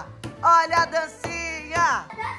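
Background music: a song with a sung melody over a steady bass line, its phrases ending in a falling vocal slide.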